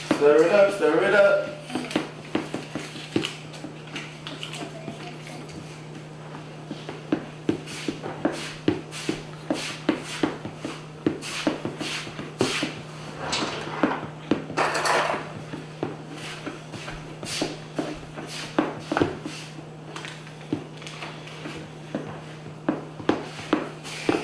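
Metal spoon stirring pancake batter in a bowl, clinking and scraping against the sides in quick, irregular taps, with a couple of longer scrapes about halfway through.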